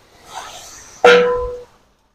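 Water hissing faintly on a hot iron griddle, then about halfway through a steel bowl clanks against a large aluminium pot, giving a short metallic ring that fades within about half a second.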